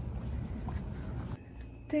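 Steady low outdoor rumble with faint scuffing noise, picked up by a handheld phone microphone while walking. It drops to quieter indoor room tone about one and a half seconds in, and a woman starts to speak at the very end.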